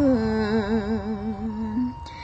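Khmer smot chanting: a woman's voice holding one long, wavering note that steps down in pitch at the start and fades out near the end.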